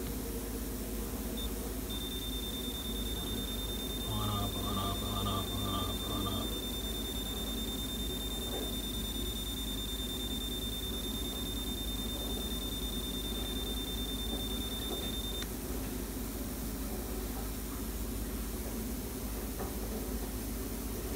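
Steady electrical hum from a mains-powered coil apparatus, with a thin high-pitched whine that starts about two seconds in and stops suddenly about fifteen seconds in. About four seconds in comes a short run of about five beeping pulses.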